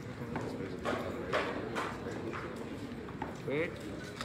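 Footsteps of hard-soled shoes on a wooden stage floor, a sharp click about every half second, over a murmur of voices.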